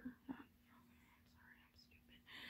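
Near silence with faint whispered speech.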